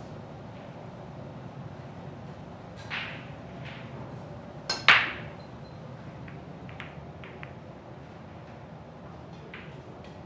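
Heyball break shot on a full rack: a sharp click as the cue strikes the cue ball, then at once the loud crack of the cue ball smashing into the racked balls, followed by a few scattered clicks of balls colliding and meeting the cushions. A single knock comes about two seconds before the break.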